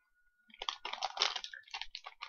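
Wet clicks and smacks of chewy candy being chewed close to the microphone, in an irregular run starting about half a second in.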